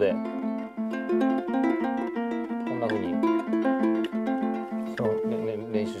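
Ukulele picked in a fast, even tremolo-style pattern: a steadily repeated note alternating with melody notes on a neighbouring string, so the melody falls on the off-beat.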